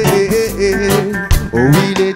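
Live band music: acoustic guitar and drum kit keeping a steady beat, under a melody line that glides between notes.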